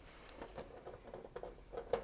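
Faint, scattered small clicks and taps of hands and a screwdriver working among the wires and plastic connectors of a heat pump's control panel.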